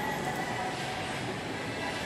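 Steady hum of indoor shopping-mall ambience with faint distant voices.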